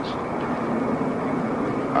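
Steady outdoor background noise: a continuous rumble and hiss with no distinct events, like distant traffic.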